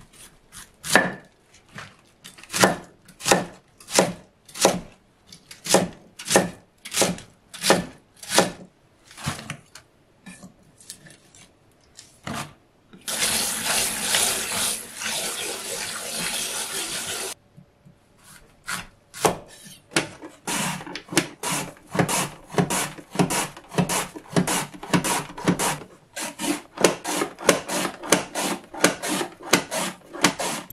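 A kitchen knife chopping napa cabbage on a wooden cutting board, about two cuts a second. About thirteen seconds in, a tap runs over cabbage in a colander for about four seconds, then stops suddenly. A long run of quicker rhythmic strokes follows, about three a second.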